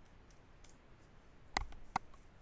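Computer keyboard keys being typed: a few faint taps, then two louder key clicks close together near the end, the last as the command is entered.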